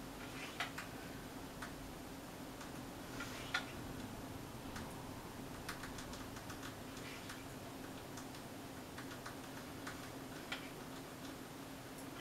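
Faint, irregular light clicks and taps from handling a makeup brush and a plastic compact, the two loudest about half a second and three and a half seconds in, over a steady low hum.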